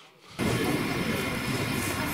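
Jet aircraft engine noise, a steady even roar that sets in abruptly about a third of a second in.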